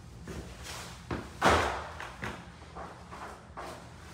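Footsteps and irregular knocks of a person walking across a hard floor in a small room, with one louder thump about a second and a half in.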